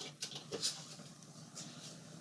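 A few soft clicks and handling taps in the first second as a power cord's plug is pushed into a wall outlet, then faint room noise.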